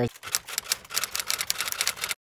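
A rapid, irregular run of sharp clicks or taps that cuts off suddenly near the end.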